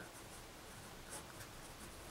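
Ballpoint pen writing a word on paper: faint strokes of the tip across the sheet.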